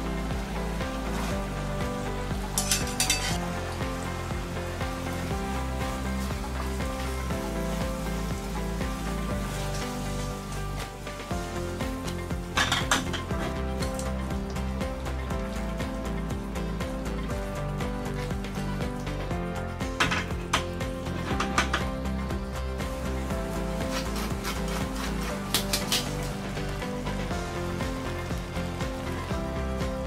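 Meat sauce sizzling in a pan as macaroni is stirred into it with a metal ladle, with clusters of sharp clinks of the ladle against the pan four times, over background music.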